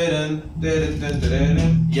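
Band instruments played loosely during a rehearsal: a held low note with guitar plucking over it.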